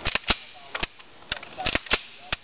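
Sharp metallic clicks and clacks of an L1A1 rifle's action being handled after reassembly, about eight irregular snaps over two seconds, with a quick cluster near the end.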